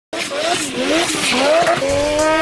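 Car engine revving hard in a drift, its pitch climbing and dropping about three times, with tyres squealing as the car slides.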